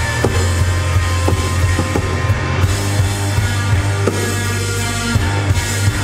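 Live rock band playing an instrumental passage: electric guitar, electric bass guitar and drum kit, with a heavy, sustained bass line and regular drum hits.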